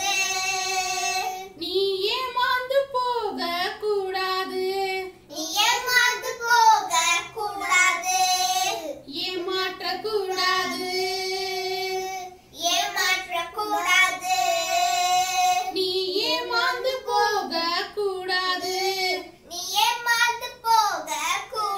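Young children singing a song in phrases of a few seconds each, with long held notes and short breaks between the lines.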